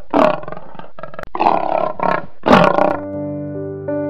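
A domestic cat growling and hissing in about four loud bursts over the first three seconds, over soft background music that carries on alone afterwards.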